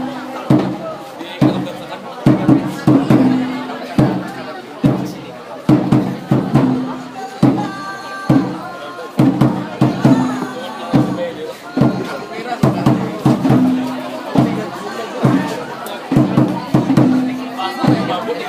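Traditional percussion music for a dance: a steady, regular drum beat with a low ringing tone that comes back every three to four seconds, over audience chatter.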